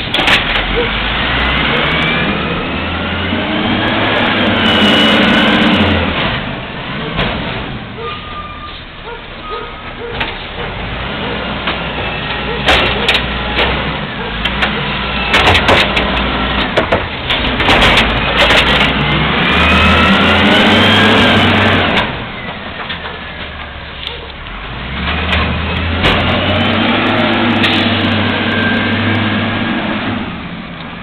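Automated side-loader garbage truck with an Amrep arm at work: its diesel engine revs up again and again with rising whines as the hydraulic arm lifts the carts. Several sharp bangs near the middle as a cart is shaken out into the hopper.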